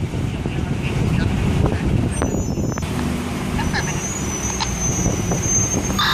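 Vehicle engines running and road traffic, a steady low rumble, with voices in the background. A thin high-pitched whine comes in a little past halfway and holds.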